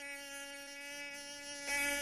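A mosquito whining in flight: a thin, steady buzz with a stack of overtones, growing louder near the end.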